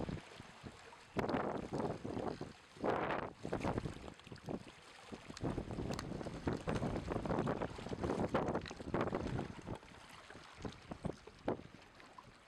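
Shallow seawater washing and splashing over shoreline rocks in irregular surges, with wind buffeting the microphone.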